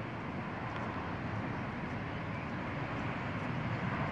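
A steady low outdoor rumble, swelling slightly toward the end.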